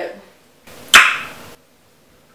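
A single sharp hit about a second in, inside a short rush of hissy noise that stops abruptly.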